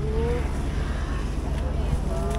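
A steady low rumble with a faint even pulsing. A person's voice rises briefly at the start and is heard faintly after.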